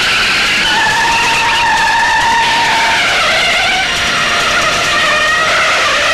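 Car tyres squealing in long, wavering screeches over running engines: a film car-chase sound effect.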